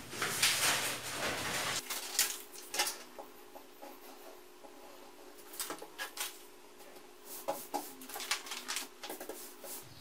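Sheets of pattern paper being handled on a cutting table: irregular rustling and crinkling with scattered light taps and clicks, busiest in the first couple of seconds and again in bursts later on.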